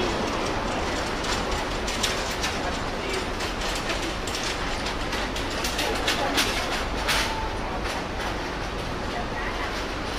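Busy street ambience: a steady rumble of traffic and crowd murmur, with scattered sharp clicks and clatter in the middle seconds.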